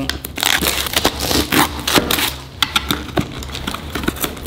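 Cardboard product box being opened by hand: the seal tearing and the flaps scraping and crackling, with scattered sharp clicks and taps.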